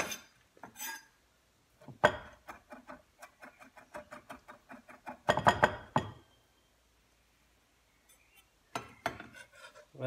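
Chef's knife mincing capers and basil on a wooden cutting board: a quick run of light chopping taps, about seven a second, then a louder, longer stroke a little past halfway, a pause, and a few more taps near the end.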